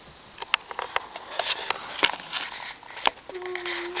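A toddler wriggling on a bedspread: fabric rustling with sharp clicks and close sniffing or breathing sounds, then a short steady hum near the end.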